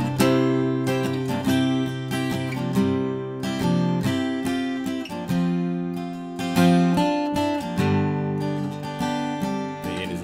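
Acoustic guitar, capoed at the third fret, strummed chords in a steady rhythm of about two strokes a second.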